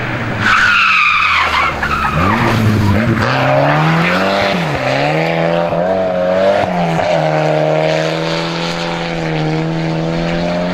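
Volvo 240 rally car braking into a corner with a tyre squeal about half a second in, the loudest moment. It then accelerates hard away, its engine revving up through several quick gear changes before holding at high revs.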